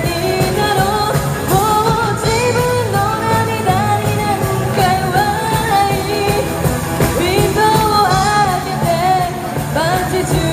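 Live rock band playing: electric guitars and drums, with a female voice singing the melody.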